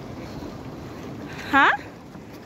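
Wind blowing on the microphone, a steady rush, cut across near the end by a person's short rising "huh?".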